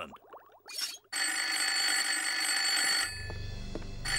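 Old-fashioned telephone bell ringing: one ring of about two seconds starts about a second in, and the next ring begins near the end.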